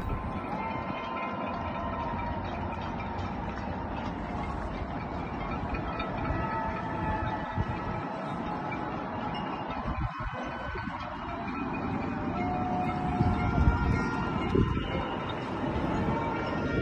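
Distant city-wide noise-making in thanks to frontline workers, heard from high above the streets: a steady wash of noise with many long horn-like tones at different pitches sounding over it, growing a little louder near the end.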